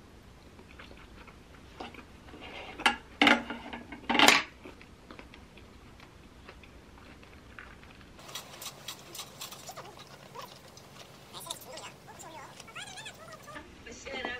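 Close-up eating sounds from a person eating gimbap, with a few loud, sharp noises about three to four seconds in. Later come small clicks and faint voices.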